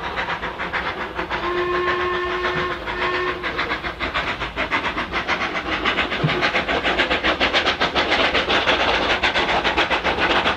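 Industrial saddle-tank steam locomotive working hard under load with rapid exhaust beats, growing louder as it approaches. About one and a half seconds in, its whistle sounds one long blast and then a short one.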